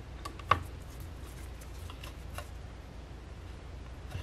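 A few faint clicks and taps as a screwdriver engages and turns the screws that hold a clear acrylic base plate to a router, with one sharper click about half a second in. A low steady hum sits underneath.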